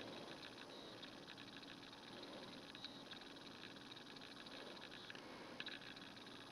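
Near silence: faint hiss with a few soft ticks as fingers handle a small metal pendant.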